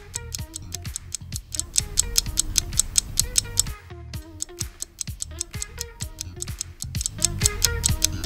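Background music with a steady rapid ticking over a short stepping melody and a low bass: a countdown timer track playing while the quiz timer runs down.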